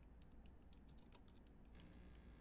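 Faint, rapid typing on a computer keyboard: a quick run of sharp key clicks, about eight a second, as a short phrase is typed.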